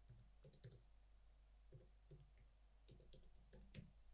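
Faint computer keyboard keystrokes in a few small clusters, typing a short word, over near silence.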